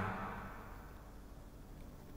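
Faint steady background hiss in a pause between spoken phrases, with the last word trailing off at the very start.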